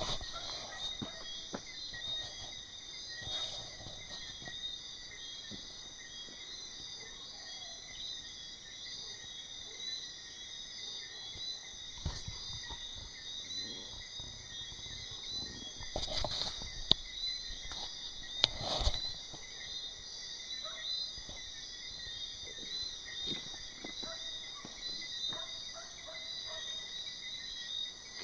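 Steady chorus of night insects, crickets or the like, trilling in several high, even bands. A few sharp clicks cut through it about two thirds of the way in.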